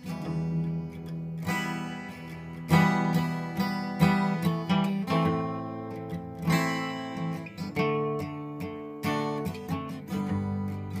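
Acoustic guitar strummed through a chord progression, a strong stroke every second or so with lighter strokes between, the chords ringing on between them.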